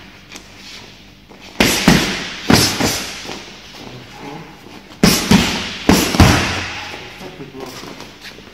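Boxing gloves smacking a coach's focus mitts in two quick combinations: three or four sharp hits about a second and a half in, then four more from about five seconds in, each hit ringing briefly in the hall.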